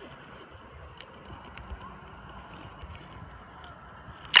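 Faint, low water and handling noise with a few soft ticks as a small largemouth bass is held in shallow water for release.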